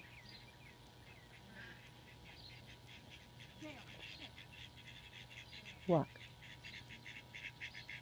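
A small group of ducks being herded, giving faint, rapid chattering quacks that come thicker and quicker through the second half.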